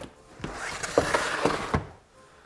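Large cardboard box being handled and moved away: a scraping rustle of cardboard with a few knocks, starting about half a second in and lasting over a second.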